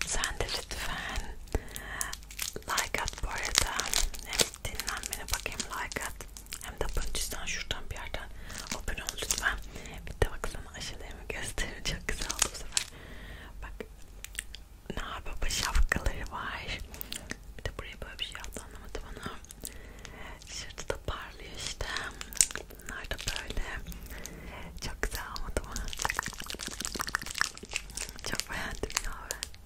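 Plastic wrappers on candy canes crinkling and crackling as they are handled close to the microphone, in a dense, irregular run of sharp crackles.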